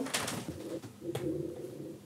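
A faint, low humming voice with a soft click about a second in.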